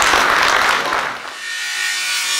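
Audience applauding, the clapping dying away about a second and a half in.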